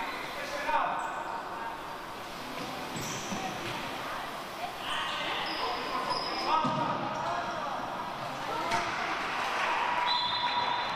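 A handball bouncing and hitting the wooden floor of a sports hall, with a few sharp thuds, amid shouting voices, all echoing in the large hall.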